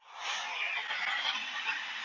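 Recorded road-traffic noise played from a phone: a steady rushing hiss that swells in at the start, picked up through the Sony WH-CH520 headphones' microphone.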